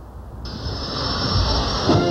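Steady high jet hiss of a taxiing T-45 Goshawk's turbofan engine, coming in about half a second in and growing louder with a low rumble beneath. Music starts near the end.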